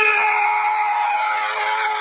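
A long, high-pitched scream held at one steady pitch.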